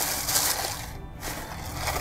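White shredded paper gift-box filler rustling and crunching as fingers press and tuck it down into a cardboard box, loudest in the first second, with background music underneath.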